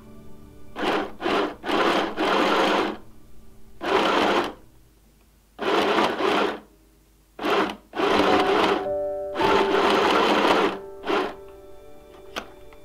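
Small mini sewing machine stitching in short runs, its motor starting and stopping several times with brief pauses between runs as the fabric is guided under the foot.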